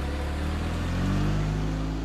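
Old car's engine running and speeding up, its note rising over the first second and a half, then holding steady.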